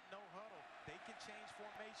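A television football commentator speaking over steady stadium crowd noise, with a single thump about a second in.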